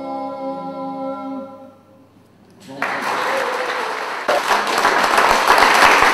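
Three voices singing unaccompanied in close harmony hold the final chord of a hymn, which dies away about a second and a half in. After a short pause, audience applause starts and grows louder.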